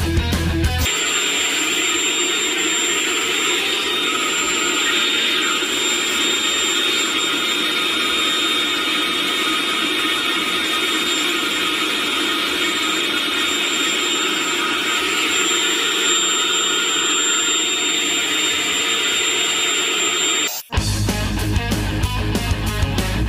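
Milwaukee M18 compact vacuum running continuously on an M18 5.0 Ah battery during a run-time test, making a steady high whine of motor and airflow. The sound starts abruptly about a second in and cuts off abruptly about a second before the end, with rock music at either side.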